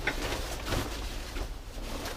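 Rustling and handling of a textile motorcycle jacket as it is picked up from a pile of riding gear and lifted.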